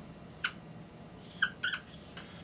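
Dry-erase marker squeaking on a whiteboard while drawing: a short squeak about half a second in, then three quick squeaks close together near the end.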